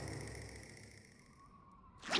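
Cartoon sound effect of a scoop of ice cream landing on the ground: a low thump that dies away over about a second into near silence.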